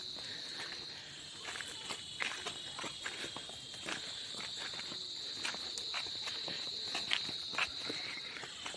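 Steady, high-pitched drone of forest insects, with irregular footsteps on a paved road over it.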